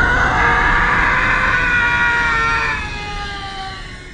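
A long, loud scream, held for over three seconds, sliding down in pitch and fading near the end.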